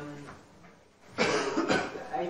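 A person coughs twice in quick succession, a little over a second in.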